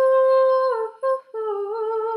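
A young woman singing unaccompanied, holding a long steady note, breaking off briefly about a second in, then holding a slightly lower note with a gentle vibrato.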